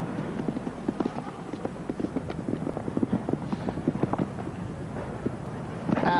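Showjumping horse galloping on grass turf: a quick, irregular run of hoofbeats.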